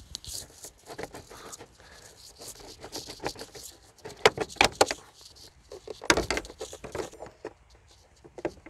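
An engine's air-intake hose and its plastic fittings being worked loose by hand with a pick: a string of irregular clicks, scrapes and rattles, with a few louder sharp snaps past the middle.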